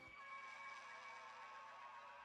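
Near silence, with a few faint steady tones.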